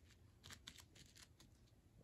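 Near silence with a few faint clicks: small plastic toy figures being handled and moved over a fake-grass mat.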